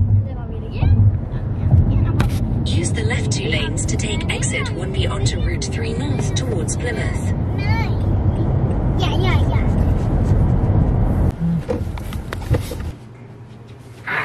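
Steady road rumble of a car driving on a highway, heard from inside the cabin, with high-pitched voices talking over it. The rumble stops about a second before the end.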